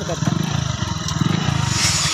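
News-bulletin background music: a fast, buzzy low pulse that runs on steadily, with a short whoosh near the end as the programme's logo sting comes in.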